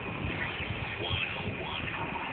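Low rumble and hiss of a car rolling slowly, heard from inside, with faint indistinct voices about a second in.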